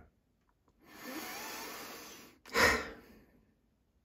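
A person breathing out: a long, steady exhalation, then a short, louder puff of breath about two and a half seconds in.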